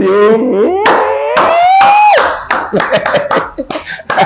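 A man's voice holding one long, drawn-out vocal sound that rises steadily in pitch for about two seconds, then breaks into short, rapid bursts of laughter.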